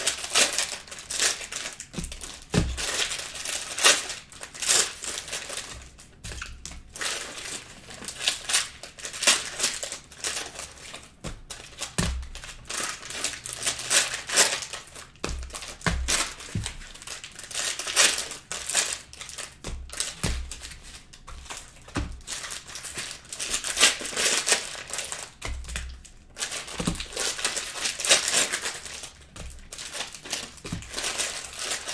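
Cellophane-wrapped trading card packs (Panini Prizm cello packs) being torn open and crinkled by hand, in irregular rustling bursts, with occasional dull knocks.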